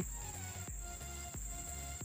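Steady high-pitched insect chorus, a continuous trill, with no breaks.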